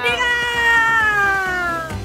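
A woman's voice holding one long, drawn-out cheering call that slowly falls in pitch and stops just before two seconds, over light background music.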